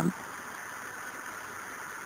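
Steady hiss of the recording's background noise in a pause between narrated lines, with a few faint high steady tones in it. The tail of a spoken word ends right at the start.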